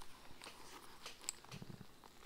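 Faint handling noise: a motorcycle helmet's chin-strap webbing and quick-release buckle being pushed and worked into the strap slot, with small clicks and rustles and one sharper tick a little past the middle. A brief low murmur comes near the end.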